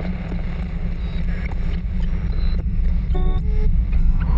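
Intro sound design for an animated logo: a deep rumbling drone that slowly swells, with scattered electronic clicks and a short glitchy beeping about three seconds in.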